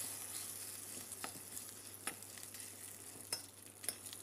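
Freshly poured hot-oil tempering sizzling on gongura chutney in a steel bowl, the hiss dying away as it cools. A metal spoon stirs it in, clinking against the steel bowl a few times.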